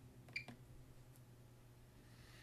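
A single short electronic beep, followed by a faint click, from a Hach 2100Q portable turbidimeter as a key on its keypad is pressed, over a low steady hum.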